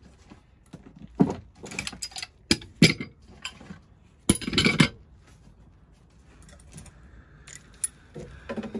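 Metal hand tools clinking and rattling as wrenches are picked up and handled, in several sharp clanks with a longer rattle about halfway through.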